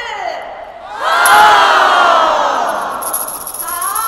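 A large crowd of people shouting together in unison with one long call that comes in about a second in and fades away over the next two seconds.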